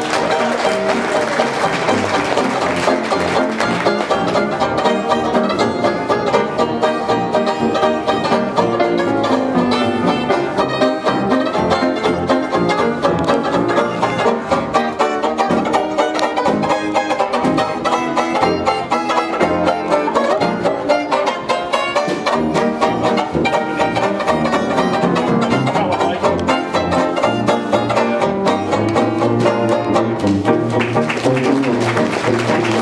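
Small traditional hot jazz band playing live with a steady beat, piano, horns and rhythm section together.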